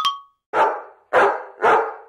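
A dog barking three times, sharp barks about half a second apart.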